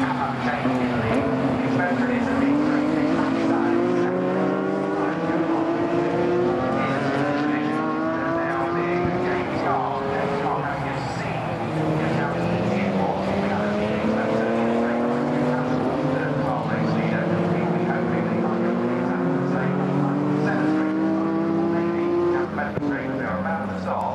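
BMW E36 and E46 3 Series race cars accelerating past on the straight, engines climbing in pitch through each gear and dropping back at every upshift, one car after another.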